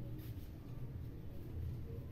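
A metal spatula stirring and scraping a dry semolina-and-sugar mix in a small metal pan, with the faint scrapes clearest about a quarter to half a second in, over a low steady hum.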